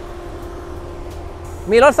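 Toyota Vellfire 2.4's petrol engine idling as a steady low hum, with a man starting to speak near the end.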